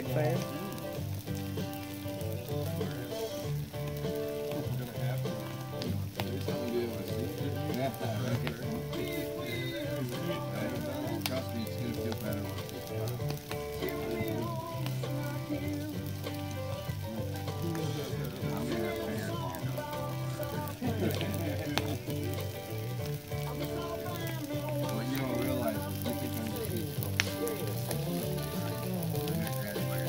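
Burning magnesium engine block in a tire fire, sizzling and crackling continuously with occasional sharp pops, under added background music.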